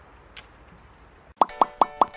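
Faint outdoor background noise, then from about one and a half seconds in a quick run of short, pitched popping 'plop' sound effects, about five a second, opening an intro.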